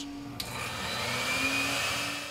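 Laboratory ultrasonic bath running, emulsifying a diesel fuel sample: a steady hiss with a faint high whine that starts abruptly about half a second in.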